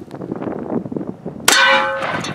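About one and a half seconds in, a .410 shotgun load strikes the body armor plate with a sharp crack and a brief metallic ring, knocking it off its stand. Before the hit, wind buffets the microphone.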